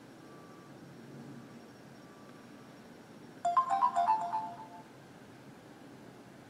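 Unnecto Drone Z smartphone's startup chime: a short jingle of a few bright notes lasting about a second and a half, a little past the middle, as the phone boots up again after a factory reset.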